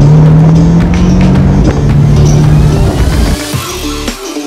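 A car engine runs at a steady pitch under background music, then drops away about three seconds in.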